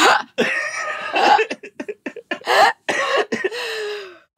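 People laughing and coughing in irregular breathy bursts, ending in one long drawn-out vocal sound near the end.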